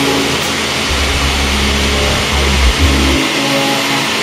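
Jeep Grand Cherokee SRT8's Hemi V8 running hard on a chassis dynamometer, loud and steady, with a deep low rumble swelling from about a second in until just past three seconds.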